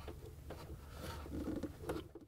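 Faint handling sounds: light ticks and rubbing of plastic as the refrigerator ice maker's plug and its locking tabs are worked loose.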